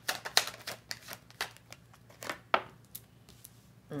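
A deck of tarot cards shuffled overhand by hand, the cards clicking against each other in quick, irregular taps that thin out after about two and a half seconds.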